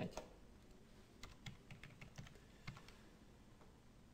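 Near silence with a handful of faint, short computer clicks, about six soft taps between one and three seconds in.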